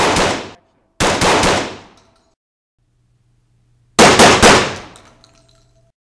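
Hatsan Escort Supreme 20 gauge semi-automatic shotgun firing. Three loud groups of quick shots, each ringing out: one at the start, one about a second in, and the loudest about four seconds in.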